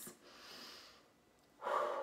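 A woman breathing audibly: a brief mouth click, a breath in lasting about a second, then a breath out near the end.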